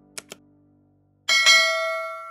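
Sound effects for an animated subscribe button: a quick double mouse click, then about a second later a bright bell chime that is struck twice in quick succession and rings on, slowly fading.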